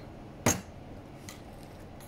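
A single sharp clink of kitchenware about half a second in, followed by a few faint light taps.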